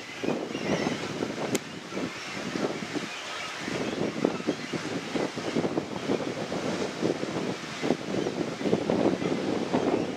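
Wind buffeting the microphone in uneven gusts. Faint high bird calls wander through the first couple of seconds, and there is a single sharp click about one and a half seconds in.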